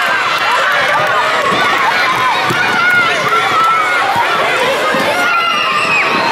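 Many children shouting and cheering at once, a dense, steady mix of high voices. Under it are the footsteps of a child running on the wooden court.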